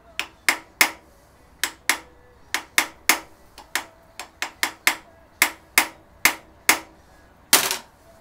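A screwdriver set in the slot of a Weber DCOE carburettor's throttle-butterfly screw being tapped with a hammer, about twenty sharp knocks at an uneven pace, the last one near the end longer. The screws are factory-secured and hard to turn.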